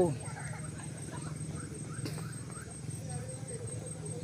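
Faint outdoor background at an open football pitch: a steady low hum with a quick run of faint short chirps, about three a second, over the first couple of seconds.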